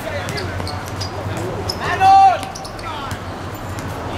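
Footballers' voices on an outdoor hard court, with one loud shout about two seconds in, over scattered sharp thuds of the ball being kicked and bouncing on the hard surface.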